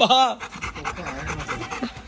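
A golden retriever panting quickly and rhythmically right at the microphone, excited.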